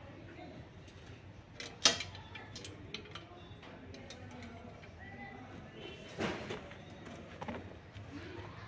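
Faint background voices, with a sharp knock about two seconds in and a softer knock around six seconds.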